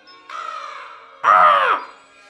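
A cartoon pet dragon's single animal-like cry, rising and then falling in pitch, a little past the middle. Soft film score music plays underneath.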